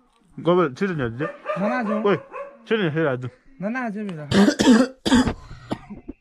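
A young man's voice making drawn-out, wordless sounds whose pitch swoops up and down. About four to five seconds in come a few short, harsh, noisy bursts, louder than the rest.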